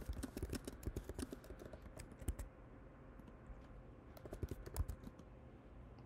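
Typing on a computer keyboard: a quick run of key clicks for about two and a half seconds, a lull, then another short run of keystrokes about four and a half seconds in.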